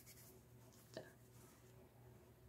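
Near silence: room tone with a faint steady low hum, and one faint click about a second in.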